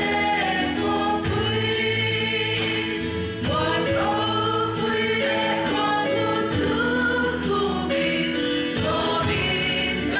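Congregation singing a hymn together, men's and women's voices in unison on long held notes that step from pitch to pitch.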